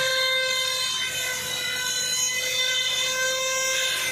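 Mobile crane lifting a heavy marble statue, giving off a steady, siren-like high-pitched whine that holds one pitch throughout.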